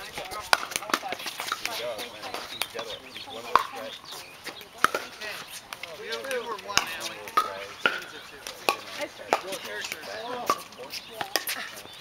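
Pickleball rally: paddles hitting a hollow plastic ball, a string of sharp hits spaced roughly a second apart, with faint voices underneath.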